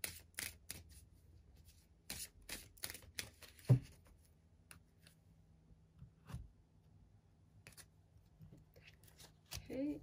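A deck of oracle cards being shuffled by hand: a quick run of card clicks and flicks for the first few seconds, a single louder thump a little before the middle, then a few soft taps as a card is drawn and laid down.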